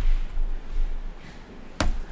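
Laptop keyboard being typed on, with dull low knocks through the first second and one sharp key click near the end.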